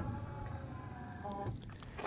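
Power running board on a 2021 Ram 3500 retracting. Its electric motor whines steadily for about a second and a half, with a click as it starts and another just before it stops.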